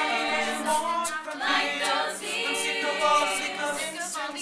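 Mixed-voice teenage a cappella group singing a pop song in close harmony, voices only, with several parts held in sustained chords.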